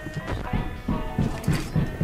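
Heavy banging on a door, several irregular knocks, over music from the film's soundtrack.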